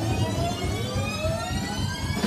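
Live rock band playing, with drums and bass under a long held note that slides slowly upward in pitch.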